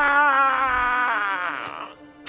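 A man's long, loud vocal call imitating an Erumpent's mating call. His voice warbles up and down in pitch, then steadies and fades out near the end.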